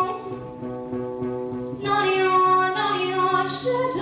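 A 12-year-old girl singing a slow ballad to her own acoustic guitar. A sung line ends at the start, the guitar carries on alone and quieter for about two seconds, then her voice comes back in.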